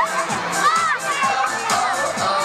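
A crowd of young children shouting and cheering together, many voices rising and falling over one another, with music playing underneath.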